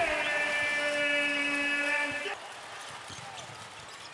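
A sportscaster's long, drawn-out shout held on one high pitch, cutting off about two seconds in, over arena noise. Faint court squeaks follow.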